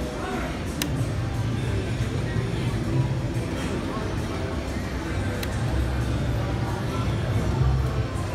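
Slot machine music and spin sounds over casino background noise, with a sharp click about a second in and another about five and a half seconds in as two spins are played.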